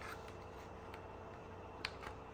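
A single light plastic click near the end as a trim clip on the gear-selector housing is pried at. Beneath it is a faint steady room hum.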